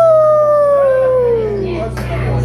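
A single long howl, rising sharply in pitch and then sliding slowly down for nearly two seconds, in a break in the music playing over the hall's speakers.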